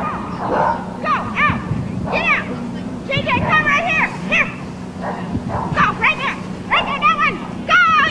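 A dog barking and yipping in many short, high-pitched calls during an agility run, mixed with a handler's called voice, over a steady low hum.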